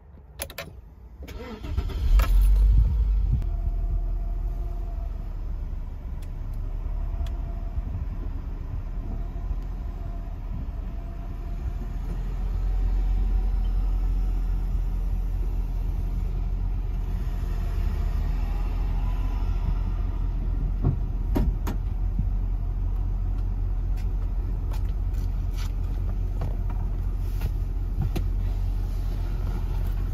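Audi Cabriolet engine idling, heard from inside the cabin as a steady low rumble. It comes in at its loudest about two seconds in, then settles.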